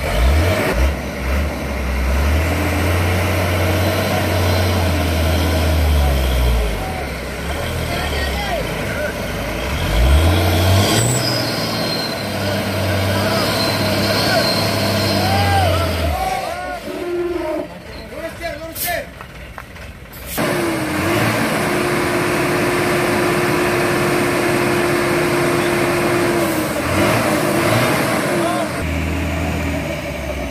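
Hino dump truck's diesel engine revving hard under load in two long surges, dropping back between them, as the stuck truck tries to pull free. About twenty seconds in a sudden loud rush of noise starts, with a steady higher engine note after it, and voices shout over the engine.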